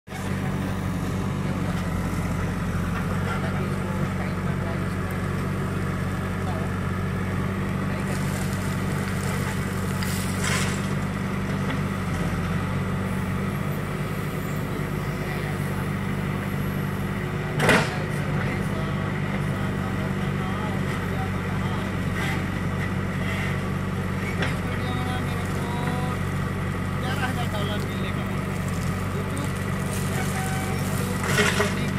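JCB backhoe loader's diesel engine running steadily under hydraulic load as the backhoe arm digs soil and swings to load a tipper truck. A single loud knock comes a little past halfway.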